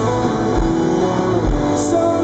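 A live rock band playing, led by strummed electric guitar, with a low beat landing about once a second.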